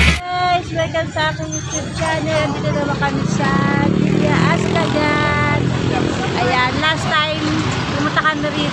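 People talking over the low rumble of a vehicle engine, which swells over several seconds in the middle and then fades.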